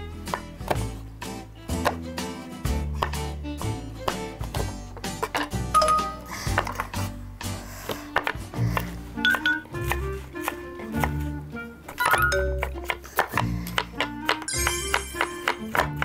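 Light background music with a plinking melody and bass notes, over a kitchen knife chopping vegetables on a wooden cutting board in many short, sharp strokes.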